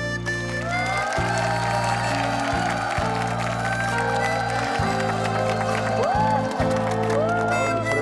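Ballad accompaniment of sustained chords, with audience applause and cheering coming in about half a second in and carrying on over the music.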